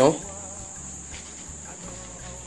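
A man's voice ends a word at the very start. Then comes a pause filled by a steady high-pitched chirring, like crickets.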